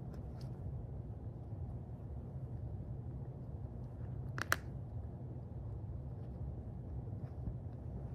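Low steady room hum with faint soft rustling, broken by one sharp double click about halfway through.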